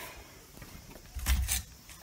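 A dull low thump with a couple of sharp clicks about a second and a quarter in, against faint background noise.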